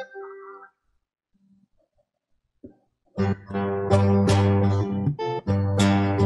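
Brazilian viola strummed and plucked in a baião rhythm, starting about three seconds in after a short silence, with a run of repeated chords and strong bass notes. The last sung note of a verse fades out at the start.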